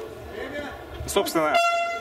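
Cage-side horn sounding one steady tone for about half a second near the end, signalling the start of the round. Before it there is low hall noise and a brief shouted voice.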